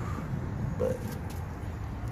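Steady low outdoor background rumble with no distinct event, and one short spoken word a little under a second in.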